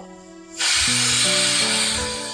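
Stovetop pressure cooker whistling: its weight valve lifts and lets out a loud hiss of steam that starts suddenly about half a second in and slowly fades. This is the second whistle, the sign that the cooker has held pressure long enough to come off the heat.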